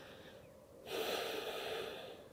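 A person's deep breath out, a breathy hiss that starts suddenly about halfway through and lasts about a second before fading, after a fainter breath just before it.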